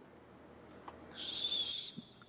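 A single short, high whistle-like tone with a hiss over it, starting a little over a second in and lasting under a second.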